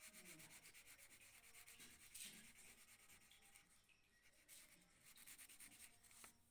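Faint scratching of a colouring pencil on paper, in quick, even back-and-forth shading strokes.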